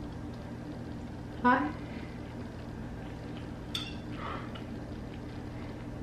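A steady low hum fills a quiet kitchen. A man gives a short "huh" about a second and a half in, and there is a brief click near the four-second mark.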